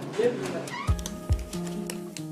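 Background acoustic guitar music starting about a second in, with plucked notes over held tones. Before it comes a brief sound that glides up and down in pitch.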